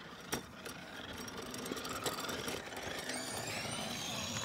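Small electric scooter motor whirring, getting louder and rising in pitch near the end, with a single sharp click about a third of a second in.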